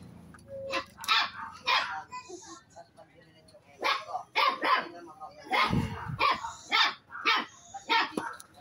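A dog barking repeatedly in short, sharp barks, about ten of them.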